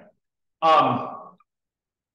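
A man's voice saying a single drawn-out "um", a hesitation in lecture speech, starting about half a second in and fading away within a second.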